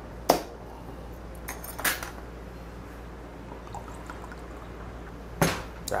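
A few short, sharp clinks of glass and tableware against quiet room tone: one just after the start, a small cluster about two seconds in, and a louder one near the end.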